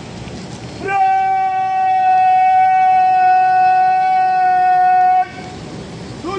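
A loud horn sounding one steady note for about four seconds. It comes in about a second in and cuts off sharply.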